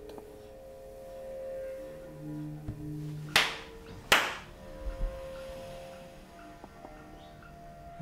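A man clapping his hands twice, about three quarters of a second apart, each clap sharp with a short ring after it, over soft sustained musical tones.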